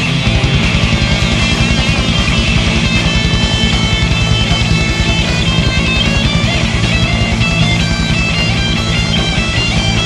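Live rock band in an instrumental passage: a lead electric guitar plays runs of quick notes over fast, driving drums and bass. A held chord gives way to this passage right at the start.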